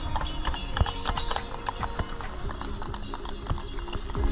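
Horse's hooves clip-clopping on the paved square, a quick uneven run of sharp knocks, with music playing faintly underneath.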